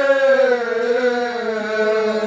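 Men's voices reciting soz, the unaccompanied Urdu mourning chant, holding one long note that sinks slowly in pitch.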